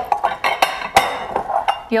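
Kitchen bowls clinking and knocking against one another as they are handled and stacked: a quick run of sharp knocks, each with a brief ring.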